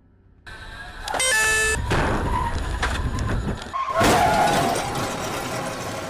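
A car crash. A sudden loud impact comes about half a second in, followed by a short high tone and a continuing din of banging, crunching and breaking. A second heavy impact comes about four seconds in, with squealing, scraping metal that is still going at the end.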